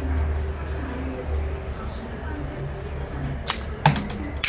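A Discovery 100 recurve training bow shot near the end: two sharp knocks about a third of a second apart, the string's release and then, louder, the arrow striking the target, over a steady low rumble.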